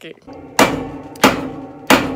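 Three hard knocks on a dorm bed frame, about two-thirds of a second apart, each leaving a brief ring, as the frame is struck to work it loose for raising it to a lofted height.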